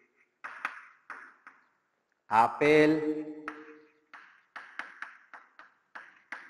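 Chalk tapping and scratching on a blackboard as words are written: a quick run of short, sharp strokes about a second in and again over the last two seconds. In between, a man's voice briefly holds a single drawn-out sound.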